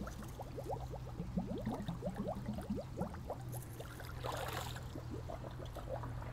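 Air bubbling and gurgling out of a flexible hose held under the pond surface as water runs in to fill it, priming the hose for a siphon. It is a quick run of small rising bubble plops, with a brief splashy rush about four seconds in.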